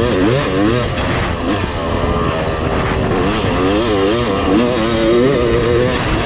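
Yamaha YZ250 two-stroke dirt bike engine under way, its pitch rising and falling again and again as the throttle opens and closes, with wind rushing over the microphone.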